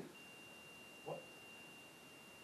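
Near silence: quiet room tone with a faint, steady high-pitched tone, and one short quiet spoken word about a second in.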